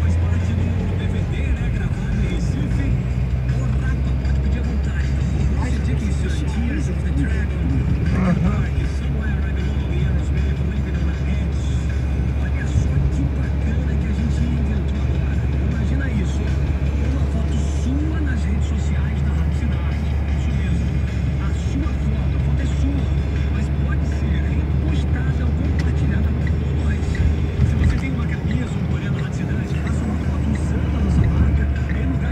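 Steady low rumble of engine and road noise inside a moving Renault Logan's cabin, with a song with vocals playing on the car radio.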